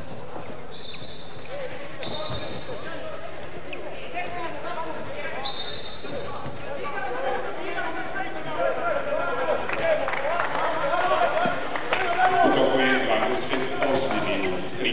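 Indoor handball game: the ball bouncing on the wooden court against a steady crowd din. Several short, high, flat whistles sound in the first six seconds. From about halfway, crowd voices grow louder.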